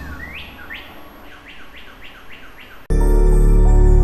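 Bird chirps as a sound effect in a TV channel ident: a run of short, sharply rising chirps that come quicker and quicker over fading held tones. About three seconds in, a loud, steady music bed cuts in suddenly.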